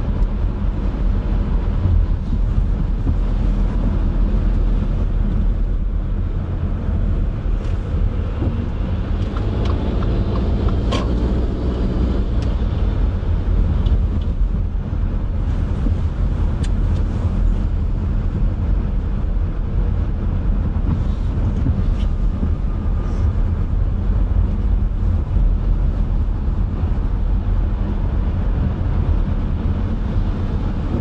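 Steady low rumble of a car's engine and tyres, heard from inside the cabin while driving slowly in city traffic. About ten seconds in, a brief pitched tone rises over the rumble.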